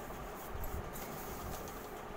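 Faint rustling of paper and a few soft bumps about half a second in, as hands press and smooth glued decorative paper flat against the back panel of a home shrine.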